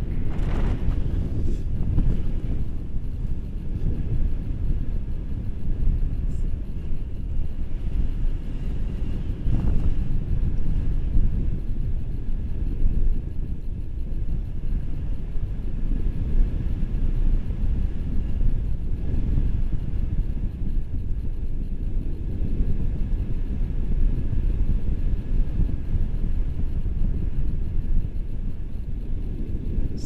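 Airflow buffeting the action camera's microphone during a tandem paraglider flight: a steady, low rumble of wind noise.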